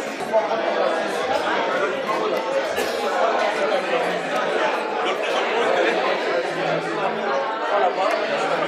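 Many people talking at once in a large room: a steady hubbub of overlapping conversation with no single voice clear.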